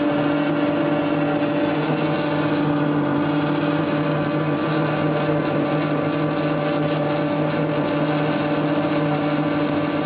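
Flexor 380C servo-driven label die-cutting and rewinding machine running in label production: a steady mechanical hum with several steady tones and no change in level.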